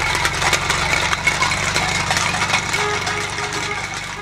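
Volkswagen Beetle's air-cooled flat-four engine running as the car pulls away, with tin cans tied behind the bumper clattering and scraping along the asphalt in quick irregular clinks. The whole sound fades gradually near the end.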